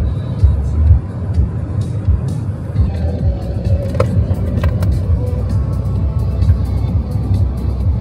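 Road and engine noise heard inside a car's cabin at highway speed, a steady low drone, under background music.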